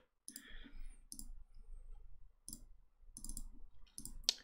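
Several faint, separate clicks from a computer keyboard and mouse.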